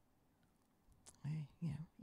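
A pause in speech, near silent with one faint click, then a voice saying "you know" near the end.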